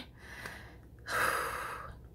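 A woman sighing: a faint breath, then a longer, louder breath about a second in that fades out.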